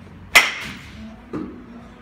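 A baseball bat striking a ball: one sharp crack with a short ringing tail, followed about a second later by a duller, quieter thud.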